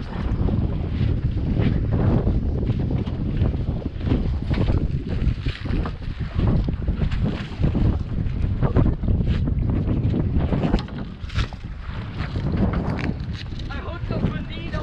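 Wind buffeting the microphone on a small boat at sea, with water sloshing along the hull and scattered knocks.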